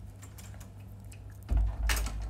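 Light taps over a low steady hum, then about one and a half seconds in a loud low thump and rumble of handling noise as a hand grips the phone that is recording.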